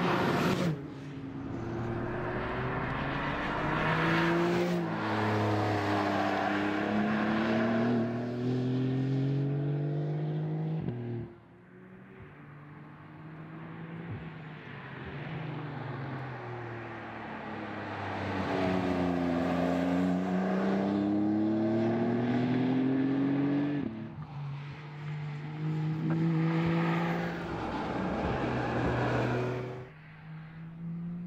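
2020 Porsche 911 Carrera 4S's twin-turbocharged flat-six under hard acceleration. Its pitch climbs repeatedly, with short breaks at the gear changes. It drops away about eleven seconds in and again near 24 seconds, then pulls up once more.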